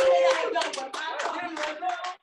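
Congregation clapping in response to the preacher, with a voice calling out over the claps in the first second.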